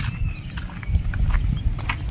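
Wind rumbling on a handheld phone's microphone, with scattered light knocks from footsteps and handling as the person holding it walks.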